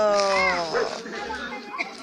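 A small black dog whining: one long, slowly falling whine that fades out about a second in.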